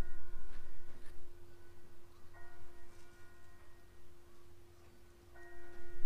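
Faint background music: a bell-like chord sounding three times, each for a little over a second, over a steady held note and a low rumble.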